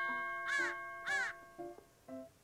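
Comic sound effect of a crow cawing twice, about half a second apart, over a single chime tone that fades away.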